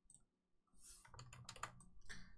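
Faint clicking of computer keys, several quick clicks in the second half after near silence, as red lines are removed from a drawing in MS Paint.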